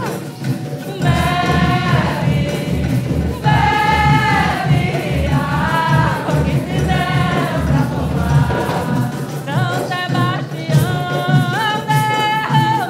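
Live Afro-Brazilian candomblé religious song: a woman's voice, with other voices joining, sings phrases of long held notes over percussion keeping a steady beat of about two a second.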